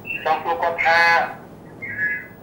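Speech only: a caller's voice coming over a telephone line, thin and narrow in tone.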